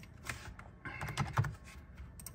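Computer keyboard typing: two short clusters of quick key clicks as numbers are entered.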